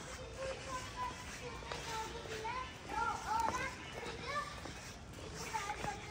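Faint background voices, high-pitched and child-like, calling and chattering intermittently over a low steady hum.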